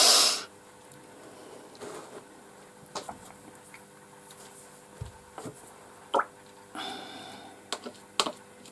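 A short, loud breath from a person close to the microphone at the start, then quiet with a few faint clicks and taps.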